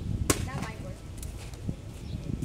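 A single sharp knock about a third of a second in, over a steady low rumble, followed by brief faint voices.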